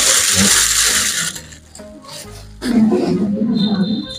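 Thin plastic bag rustling loudly as it is pulled open, for about the first second and a half, then a low buzzing sound near the end.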